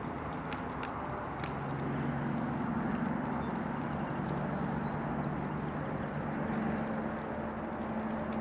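Hoofbeats of a Rocky Mountain Horse gelding gaiting on a dirt arena under a rider, in the breed's smooth four-beat ambling saddle gait.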